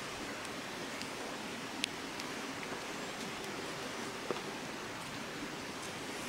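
Steady low hiss of outdoor background noise, with a couple of faint clicks about two and four seconds in.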